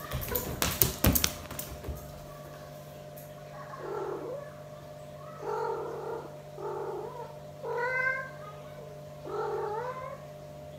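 A cat meowing five times, about one call a second, each call bending up and down in pitch. A short burst of sharp knocks and clatter comes in the first two seconds, and a steady low hum runs underneath.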